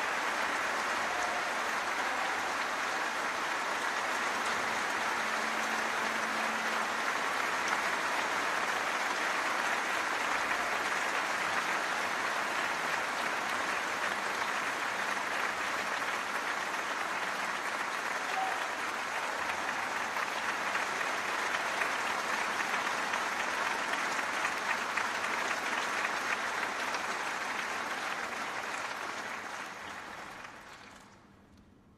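Opera audience applauding steadily, the applause dying away near the end.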